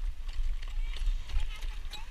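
A harness horse's hoofbeats as it trots pulling a jog cart, heard as a run of short knocks over a steady low rumble of wind on the microphone.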